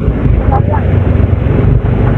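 Wind rushing hard over the microphone of a moving vehicle, with a low engine rumble underneath; a voice is faintly heard about half a second in.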